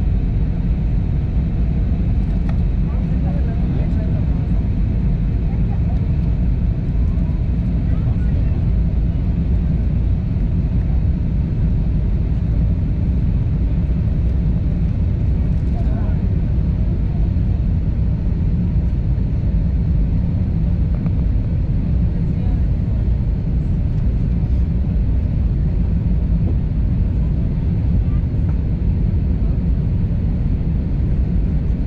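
Jet airliner cabin noise during the descent to land: a steady, deep rumble of the engines and rushing air, heard from a window seat.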